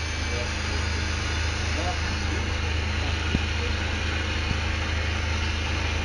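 A steady low mechanical drone with an even hiss above it, holding level throughout, with one faint tick a little past the middle.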